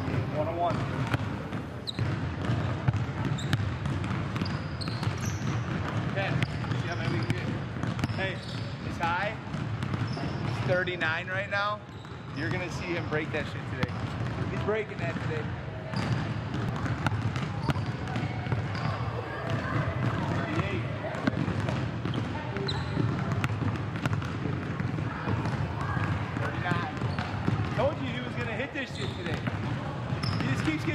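Basketballs bouncing on a gym's hardwood floor, with indistinct voices in the background.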